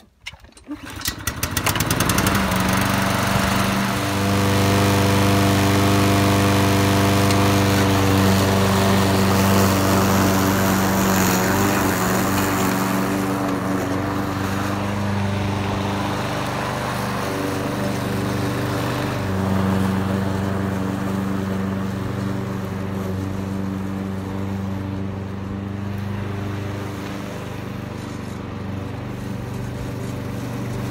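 Gas push mower's 190cc Briggs & Stratton engine (TroyBilt TB 360, self-propelled) starting up about a second in with a quick run of ticks, then running steadily under load while cutting grass. It grows slowly quieter as the mower moves away.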